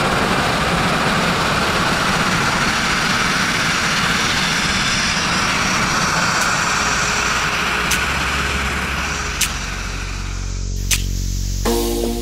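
Abrasive grit-blasting nozzle spraying media against a steel narrowboat hull: a loud, steady rush of compressed air and grit, with the first blasting running on media left in the pot from the last job. The rush thins out about ten seconds in, and music begins near the end.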